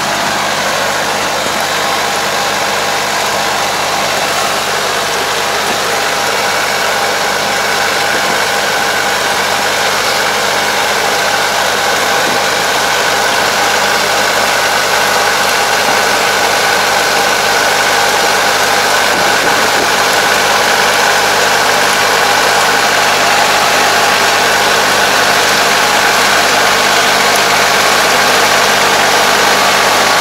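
Kubota tractor's diesel engine running steadily under load while it pulls and drives a Kobashi levee coater building a paddy levee, with a steady mechanical whine over the engine. The sound grows slowly louder as the tractor comes closer.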